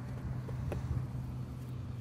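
A steady low hum, with a few faint ticks.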